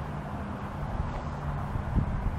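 Steady low hum of a vehicle engine running, with a constant outdoor noise background.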